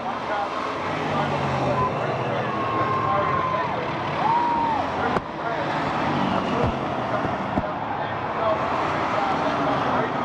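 A pack of Bomber-class stock cars racing on the oval, their engines running together in a steady mixed drone, with voices in the grandstand over it.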